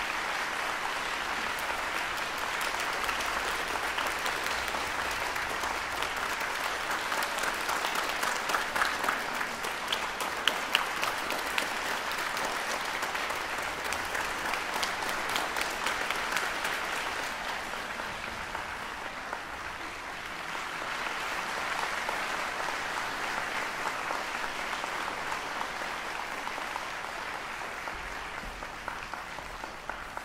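Audience applauding: dense, steady clapping that eases off a little past the middle, swells again, then tapers away near the end.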